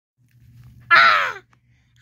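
A single short, harsh cry with a slightly falling pitch, caw-like, about a second in, over a faint low hum.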